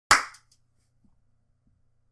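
A single loud hand clap, sharp and sudden, with a brief ringing tail in a small room. After it there is near silence with a faint low hum.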